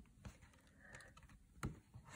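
Near silence with a few faint clicks and one sharper tap about one and a half seconds in, from hands handling a hardback picture book as its page is turned.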